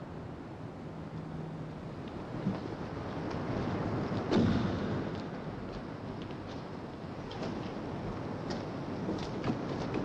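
Steady low rumbling background noise that swells about four seconds in and then eases off, with a few faint footsteps on a hard floor.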